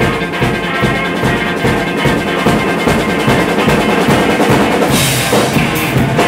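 Live band music driven by a drum kit playing a steady beat. About five seconds in, the cymbals come in bright and loud.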